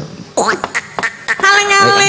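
A few sharp knocks, then about one and a half seconds in a woman's voice starts a long sung note with vibrato, a sinden beginning a Javanese song.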